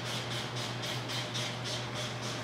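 Backing liner being peeled off a sheet of paint protection film, crackling in quick regular bursts about four or five times a second.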